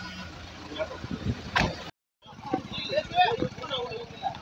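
A vehicle engine idling with a low steady hum, a few knocks and one sharp knock about one and a half seconds in. After a brief cut to silence, men's voices take over.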